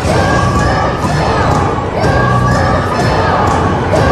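A group of children shouting and cheering together, loud and continuous.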